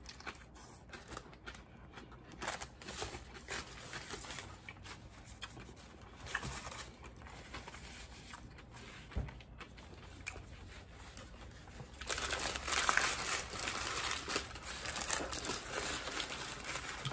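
Quiet sandwich eating with faint scattered small clicks, then paper crinkling and rustling, louder from about twelve seconds in.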